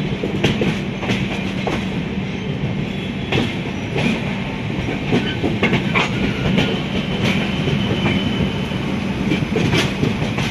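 Passenger train coach rolling along the track, its wheels clattering with irregular sharp clicks and knocks over the rail joints, with a steady low hum underneath.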